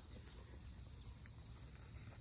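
Quiet outdoor garden ambience: a faint, steady high insect drone over a low rumble, with no distinct events.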